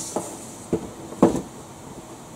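A small cardboard product box being handled and opened, giving three short knocks and taps, the loudest just past halfway. An electric pedestal fan runs steadily behind it.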